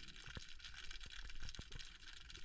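Faint underwater ambience picked up through an action camera's waterproof housing: a low hiss with scattered faint clicks and crackles.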